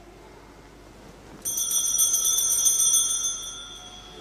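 Altar bells (sanctus bells) shaken in a bright jingling peal that starts suddenly about one and a half seconds in and rings for about two seconds before fading. They mark the elevation of the chalice at the consecration of the Mass.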